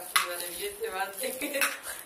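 Plastic toffee wrappers crinkling and crackling as they are unwrapped by hand, with several sharp crackles, the loudest just after the start and near the end. A brief voice sounds in the middle.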